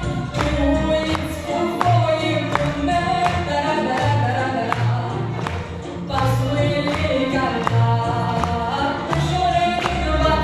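Music: voices singing together over an accompaniment with bass notes and a steady beat of about two strokes a second.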